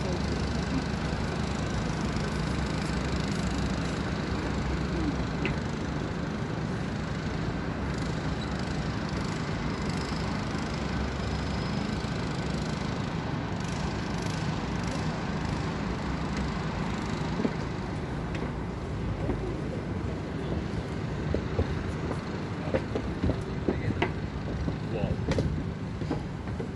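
Steady hum of city traffic rising from the streets below, with a low rumble. A few light clicks or knocks near the end.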